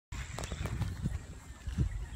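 Handling noise from a phone held in the hand: a run of soft knocks and rubs with a low rumble as fingers move over the phone near its microphone.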